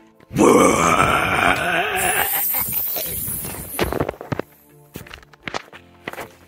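A loud, growling, bear-like roar for about two and a half seconds, then short knocks and rattles as the camera is tumbled on the ground, over background music.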